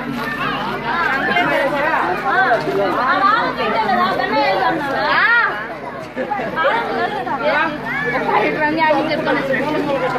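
Several people talking over one another in close, overlapping chatter, with one voice rising sharply about five seconds in.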